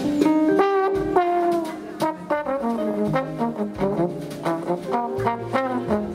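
A trombone plays a jazz line of short, shifting notes, with the band's bass and cymbals behind it.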